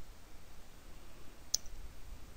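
A single sharp click about a second and a half in: a keystroke on a computer keyboard, over faint low room hum.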